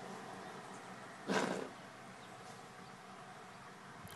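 A child blowing a raspberry against a toddler's skin: one short, buzzy blowing burst about a second in, lasting about half a second.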